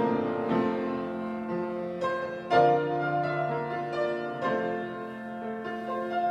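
Solo piano playing a slow piece in sustained chords, a new chord struck every second or two, the loudest about two and a half seconds in.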